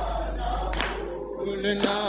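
A group of men chanting a Shia Muharram nauha in chorus while beating their chests in unison (matam), with a sharp slap about once a second. A held sung note comes in about one and a half seconds in.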